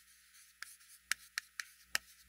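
Chalk writing on a chalkboard: about five short, separate taps and scratches as the chalk strokes are made.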